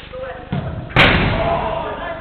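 A dull thump about half a second in, then a loud slam about a second in that rings on in the large hall: a football being kicked hard and striking the pitch's boards.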